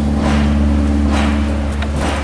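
A loud, steady low mechanical hum with a couple of steady higher tones above it, and a few faint clicks or rustles.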